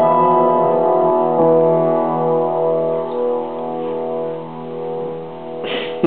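Upright piano playing the closing chords of a slow piece, the notes held and left to ring out, slowly fading. A short rustling noise comes near the end.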